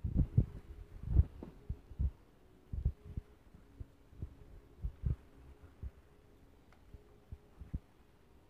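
Irregular soft, low thumps and knocks as plastic Easter eggs are handled and twisted open, busiest in the first second or so, over a faint steady hum.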